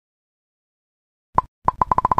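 Cartoon-style pop sound effects for animated thumbs-up icons popping onto the screen. About halfway through there is a single pop, then near the end a quick run of four more, roughly ten a second, all short and bright at the same pitch.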